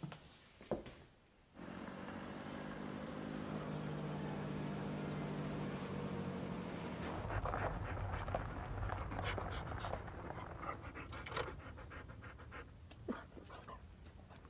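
A van's engine running as it drives, heard from inside the cabin, starting suddenly about a second and a half in and dropping lower about halfway through, with a dog panting.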